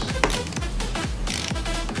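Background electronic music with a steady kick-drum beat, about two beats a second.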